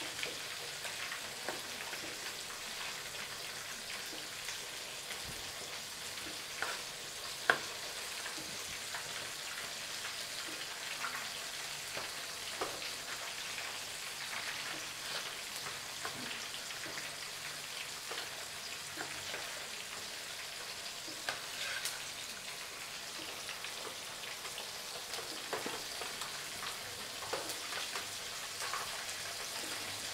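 A steady crackling hiss throughout, with a few sharp taps of a cleaver cutting through tomatoes onto a wooden chopping board.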